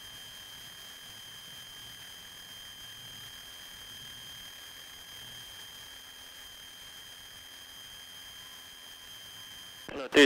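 Faint, steady high-pitched electrical whine with several overtones over a low hiss: the noise floor of a light aircraft's headset intercom audio feed, with the engine itself hardly coming through.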